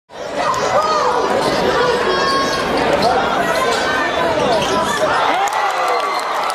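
Basketball game sounds on a gym court: a basketball bouncing and sneakers squeaking on the hardwood floor, with players' and spectators' voices.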